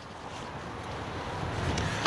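Wind buffeting the microphone with a low rumbling noise that grows louder toward the end.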